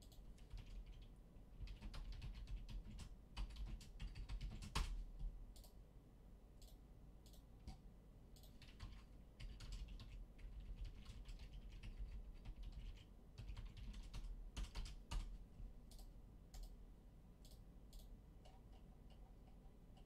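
A computer keyboard being typed on, faint clicking keystrokes in irregular runs with short pauses between them.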